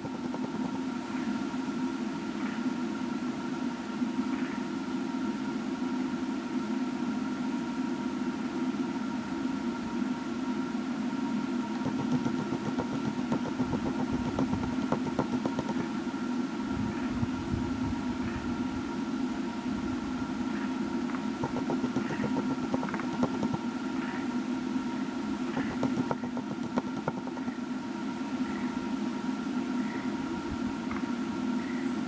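A steady low drone runs without a break, with two faint steady higher tones above it and scattered faint clicks.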